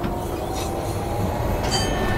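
Steady running rumble inside a moving public-transport vehicle, with a few faint thin high tones over it.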